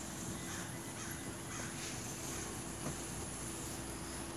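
Outdoor background noise with a steady low hum.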